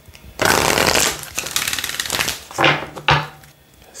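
Tarot deck being riffle-shuffled by hand: a rapid run of flicking cards for about two seconds, followed by two brief shorter card sounds as the deck is brought back together.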